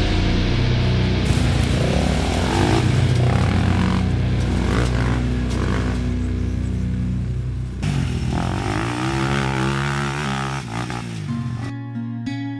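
Heavy metal music with the Honda TRX400EX quad's single-cylinder four-stroke engine revving up and down beneath it. Near the end it gives way to acoustic guitar strumming.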